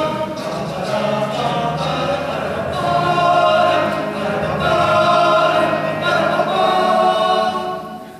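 Male choir singing sustained chords in close harmony, swelling louder through the middle of the phrase and cutting off just before the end.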